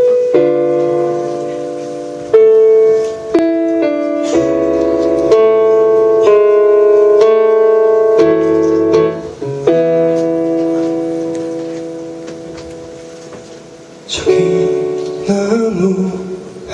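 Piano-voiced Kurzweil stage keyboard playing a slow chord intro: sustained chords that ring out, a passage of moving notes, then one long chord fading away. Near the end, other instruments come in with a guitar.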